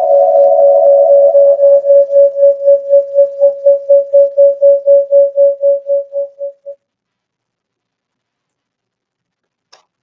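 Audio feedback howl from a livestream monitoring itself: a loud, steady single tone that breaks into fast pulsing, about four pulses a second, and dies away about two-thirds of the way through.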